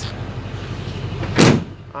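A single loud thump about one and a half seconds in, over a steady low rumble like an engine running.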